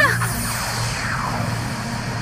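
Cartoon magic sound effect over the score: a shimmering, glittering wash with several falling sweeps in the first second or so, over a low steady hum, as a beam of purple light shoots up.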